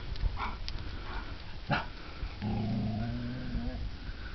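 A dog giving a low, steady growl lasting about a second and a half in the second half, after a short sharp sound a little before the middle.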